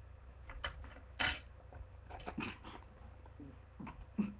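A person puffing and coughing with a mouthful of ground cinnamon, heard as several short breathy bursts, the loudest about a second in.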